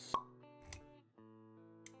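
Animated-intro sound effects over quiet background music: a sharp pop just after the start, the loudest sound, then a short low thump under a second in, with steady held notes underneath and a few light clicks near the end.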